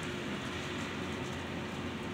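Steady background noise: an even hiss and rumble with a faint steady hum, and no distinct events.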